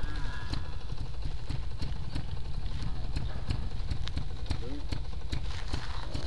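Trials motorcycle engine idling with an uneven, knocking beat.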